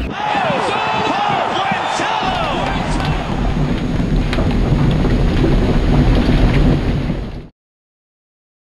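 Many overlapping voices over a steady noisy roar with a low rumble and a few sharp knocks, cutting off suddenly near the end.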